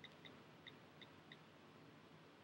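Near silence: faint room hum with about five short, faint high-pitched chirps in the first second and a half.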